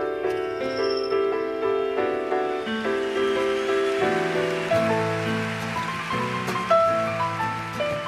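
Live instrumental introduction on piano and nylon-string acoustic guitar: a slow line of sustained, decaying notes, with lower bass notes joining about halfway through.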